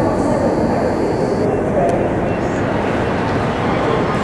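Busy railway station platform ambience: a steady din of voices and machinery. A high steady whine cuts off about one and a half seconds in.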